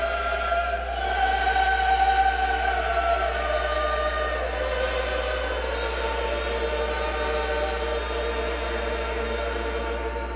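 A choir singing a slow sacred piece in long held notes, fullest about two seconds in, over a steady low hum.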